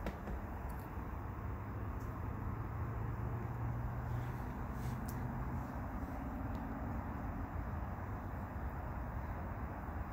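Steady low outdoor background rumble with a low hum that swells a little mid-way, and a few faint clicks.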